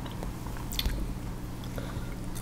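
Close-miked chewing of peeled raw sugarcane, with a short cluster of soft crunchy clicks a little under a second in. A steady low hum runs underneath.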